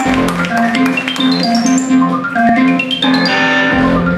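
Live keyboard music: quick runs of notes climbing step by step, repeating about every two seconds, over a low alternating two-note figure.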